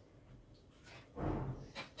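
Quiet room for about a second, then a brief low murmur of a man's voice and a single sharp tap near the end, a knife meeting the cutting board as it cuts through dried apple leather.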